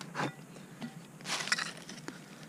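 A hand digging trowel scraping and crunching into loose soil and dry leaf litter, in two short scrapes, the second about a second and a half in.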